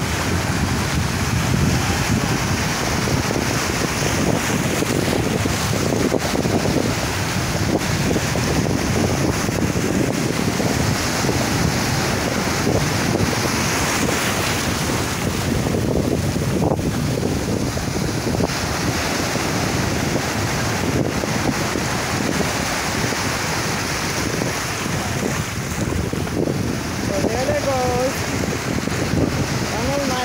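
Steady, loud rushing of wind buffeting the microphone, with no clear events in it.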